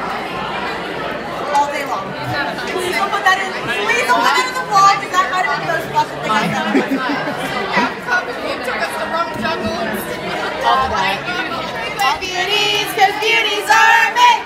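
A crowd of people talking and calling out over one another, a continuous chatter in a large room, with voices growing louder near the end.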